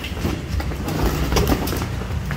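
Irregular knocks and clatter of cattle hooves on a concrete floor as the animals are moved along, over a steady low hum.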